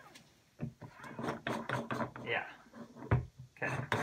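Low, mumbled speech that forms no clear words, with one sharp knock or click about three seconds in, and a spoken word starting just before the end.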